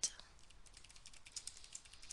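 Computer keyboard typing: a quick run of light keystrokes as a word is typed.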